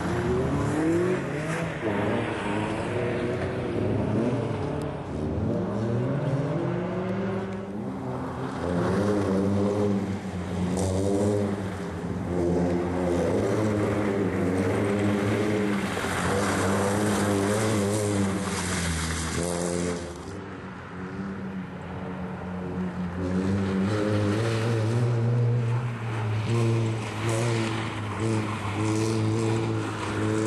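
Rally car engine revved hard through the gears, its pitch climbing and dropping again and again at each shift and lift, with tyre noise on loose, muddy ground. It eases off briefly about two-thirds of the way through, then pulls hard again.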